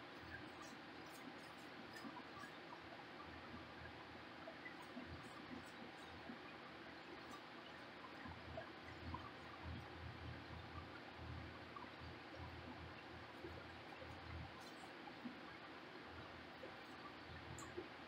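Faint, soft strokes of a small foam paint roller rolled through wet paint over a fridge's metal side, barely above room tone, with a run of low pulses in the middle.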